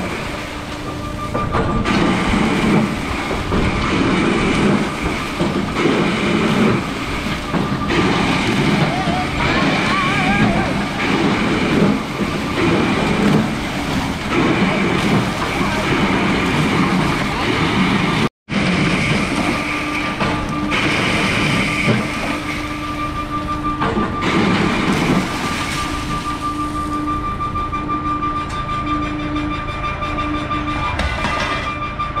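Crushed ice pouring down a metal chute into a fishing boat's hold: a loud, steady rushing rumble with machinery running and a steady whine over it. The sound drops out for an instant about 18 seconds in, then carries on with a pulsing hum.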